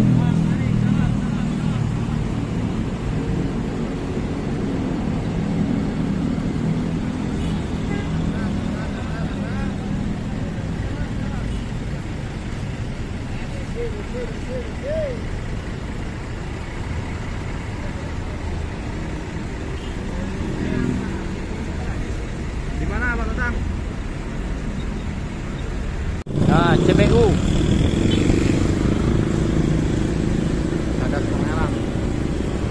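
Diesel bus engines running as buses pull past, a steady low rumble with a pitched engine note that is strongest at the start and fades. About 26 seconds in, the sound cuts abruptly to a louder steady rumble from a moving vehicle.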